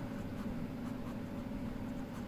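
Blue ballpoint pen writing on lined notebook paper: faint, steady scratching as a word is written out.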